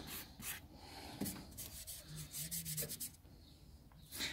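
Faint, short dry rubbing and scraping strokes of a fingertip brushing over the dusty inner door panel and speaker surround.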